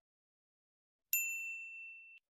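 A single notification-bell 'ding' sound effect about a second in: one bright, high ring that fades away.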